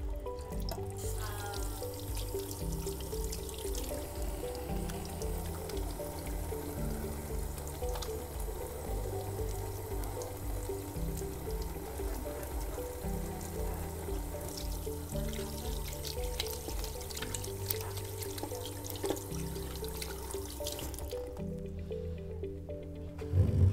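Tap water running into a small stainless-steel sink while hands are washed under it, over background music. The water starts about half a second in and stops shortly before the end.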